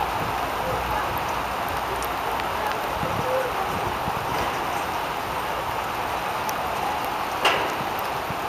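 Ambience of an outdoor football match: a steady rushing noise with faint, distant players' voices, and one short sharp sound about seven and a half seconds in.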